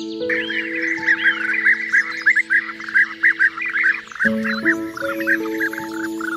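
Soft background music of long held notes, with a dense run of quick, high bird chirps over it that starts about a quarter second in and carries on almost to the end.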